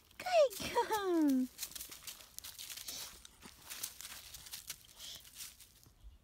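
Dry fallen leaves crunching and rustling underfoot, a quick scatter of crackles that thins out near the end.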